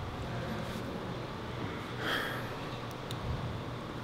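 Steady background hum of a gym hall, with one short breathy sniff or inhale about two seconds in and a few faint clicks.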